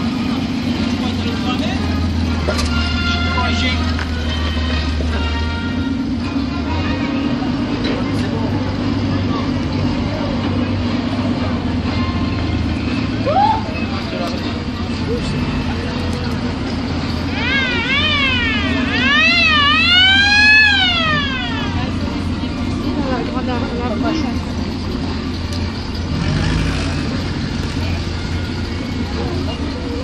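Engines of WWII military vehicles, a Dodge WC-series truck and Willys-type jeeps, running steadily at low speed, with onlookers' voices around them. About two-thirds of the way through, a pitched tone swoops up and down four times.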